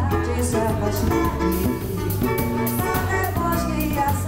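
Live samba band playing: drum kit, electric bass and cavaquinho keeping a steady groove.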